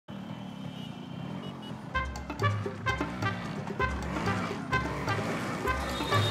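Street traffic noise from motorcycles and scooters in a city jam, a steady low rumble; about two seconds in, background music with a steady beat comes in over it.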